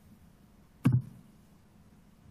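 Faint room tone, broken once a little under a second in by a single short, sharp click.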